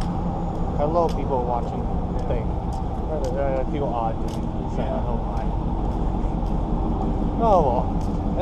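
Steady rumble of city street traffic, with brief indistinct voices.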